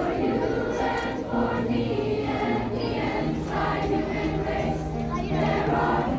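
A large middle-school choir singing together, with long held low notes beneath the voices.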